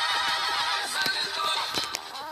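A horse neighing, dubbed in as a sound effect, with a few sharp knocks like hoofbeats.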